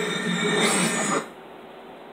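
Movie trailer soundtrack playing through a television's speakers, cutting off suddenly just over a second in as playback is paused, leaving faint room hiss.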